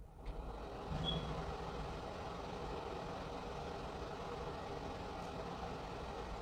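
A steady low mechanical drone, like a running engine or motor, begins abruptly and carries on unchanged.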